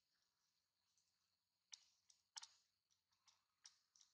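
Near silence with about five faint, sharp clicks in the second half, over a faint steady high hiss.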